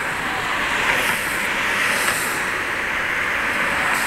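Steady road traffic noise from cars passing on a city street.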